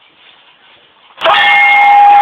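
A quiet first second, then a loud, steady blaring tone that starts suddenly just over a second in and holds.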